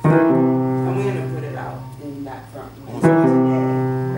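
Upright piano: a chord struck and left to ring, fading away, then a second chord struck about three seconds in and left to fade.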